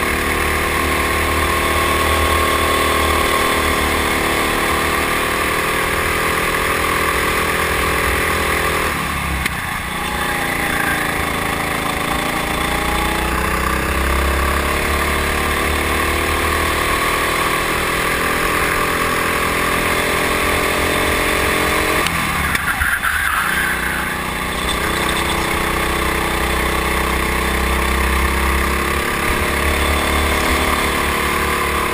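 Go-kart engine heard onboard under throttle, over a steady rush of wind noise. Its note drops sharply about nine seconds in and again around twenty-two seconds, and in between climbs slowly back up as the kart gathers speed.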